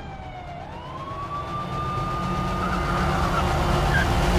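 Police siren wailing: one tone dips, then rises and holds steady. A low rumble underneath grows louder.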